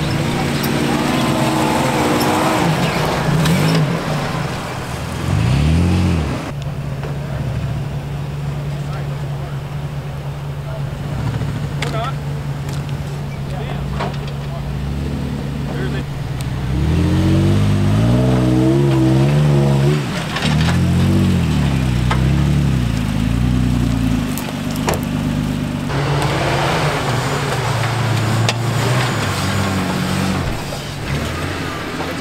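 Toyota 4x4 trucks' engines revving as they climb a sandy hill, the revs rising and falling in surges early on and again in the middle, with steady engine running between.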